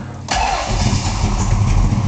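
A 505 cubic-inch stroker big-block Chevy V8 with headers and a 3-inch exhaust through Hooker Aero Chamber mufflers starts on the key, catching almost at once about a third of a second in. It then runs at a loud, deep, uneven idle, the lope of its solid-lifter roller cam.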